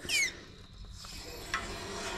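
Homemade hydraulic bottle-jack can-crushing press being let back up: a short high squeak falling in pitch, then a single light click about one and a half seconds in.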